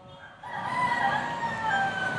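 A rooster crowing: one long call starting about half a second in, its pitch stepping down toward the end.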